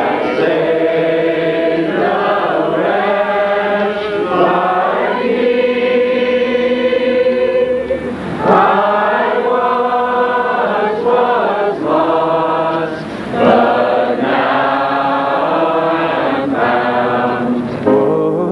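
A group of voices singing slowly in unison, holding long notes that change pitch every second or so.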